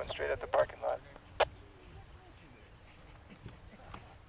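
A person talking briefly at the start, then a single sharp click about a second and a half in, followed by faint, distant voices.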